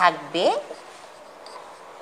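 Marker pen writing on a whiteboard, a faint scratching after a brief spoken word at the start.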